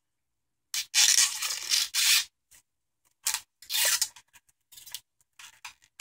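Original factory plastic shrink-wrap being torn open on a sealed LP record sleeve: one long tear about a second in, then several shorter tears and rustles.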